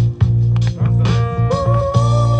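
Playback of a new, unreleased song mix over studio speakers: a steady bass line with guitar and held instrument notes, in a short gap between sung lines.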